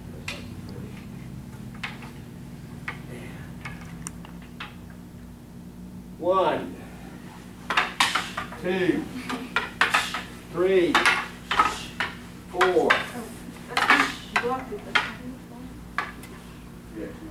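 Wooden bokken knocking against each other in partner strike-and-block drills: a few light clacks at first, then louder, more frequent clacks from about six seconds in.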